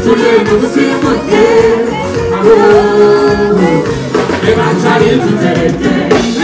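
Live band music with a vocalist singing, loud and continuous over a concert sound system.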